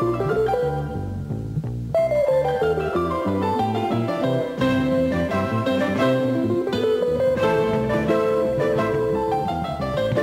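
Acoustic guitar picking fast scale runs together with a double bass and a piano, the notes climbing and falling in quick succession.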